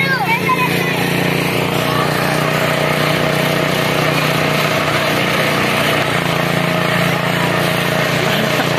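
A small engine running with a steady, unchanging hum while a spinning chair-swing ride turns, with people's voices mixed in.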